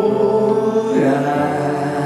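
Male vocalist singing a slow gospel worship song into a microphone over musical accompaniment, holding long notes with a change of note about a second in.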